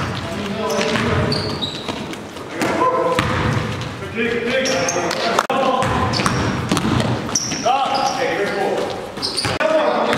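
A basketball is dribbled and bounces on a hardwood gym floor, with short high-pitched sneaker squeaks and players' voices echoing in the gymnasium.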